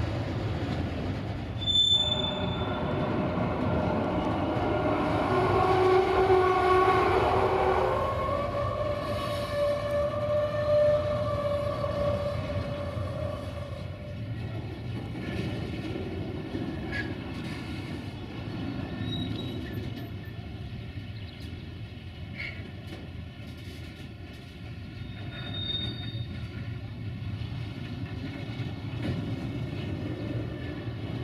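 Freight wagons of an intermodal train rolling past with a steady rumble. Through the first half a drawn-out, many-pitched tone sounds, with a few short high squeaks later.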